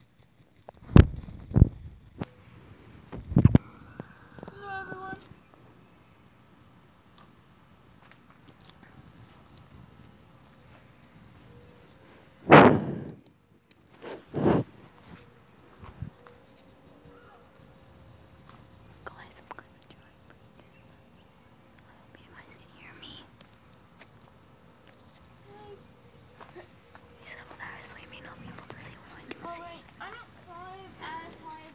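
Handling noise of a phone camera knocked about as its holder climbs the tree: a few heavy thumps in the first seconds, the loudest about twelve seconds in and another two seconds later, with faint whispering voices between.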